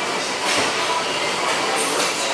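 Plate-loaded leg press sled, stacked with weight plates, rolling on its rails during a set: a steady, noisy rumble.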